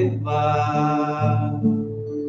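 A man singing a slow Portuguese devotional song in a low voice, holding long notes, while accompanying himself on acoustic guitar.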